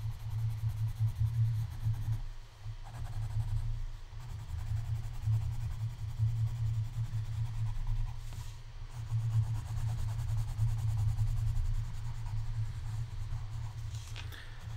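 Coloured pencil shading back and forth on sketchbook paper: a continuous scratchy rubbing that swells and falls with each stroke, with brief pauses about two and a half, four and eight seconds in.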